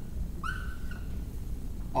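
Dry-erase marker squeaking on a whiteboard as a note is drawn: one squeak about half a second long, starting about half a second in, over a low room hum.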